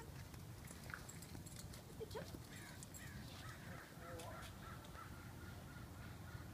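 Faint bird calls: two short rising calls, then a run of quick chirps through the second half.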